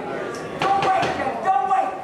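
Boxing gloves landing punches: a few sharp slaps in quick succession, mixed with men's shouting.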